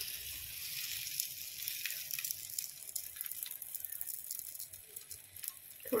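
A tilgul poli, a jaggery-and-sesame stuffed flatbread, sizzling on a hot griddle: a steady hiss with many small crackles.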